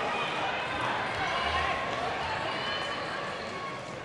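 Indistinct chatter of many voices from spectators and officials, a steady hubbub echoing in a large indoor track hall, with no single voice clear.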